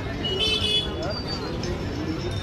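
Busy street-side ambience: a steady hum of traffic with background voices, and a brief high-pitched tone about half a second in.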